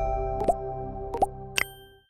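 Outro jingle of held, chime-like notes with three short pop sound effects for an animated like, share and subscribe button bar: about half a second in, at a little over a second, and at about a second and a half. The sound fades out at the end.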